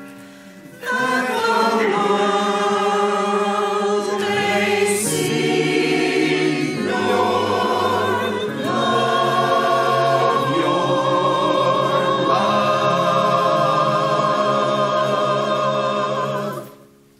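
Mixed church choir singing a hymn in sustained chords, the voices coming in together about a second in after a brief pause.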